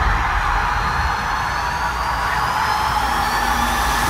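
Cinematic sound design: a steady rushing roar over a deep rumble, with a faint high tone rising slowly through it.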